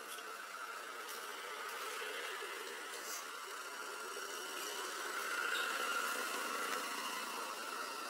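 Steady outdoor background buzz, swelling a little past the middle, with a few faint ticks.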